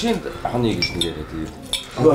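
Metal knives and forks clinking and scraping against china plates during a meal, a few short, ringing clinks, with a man's voice at the start.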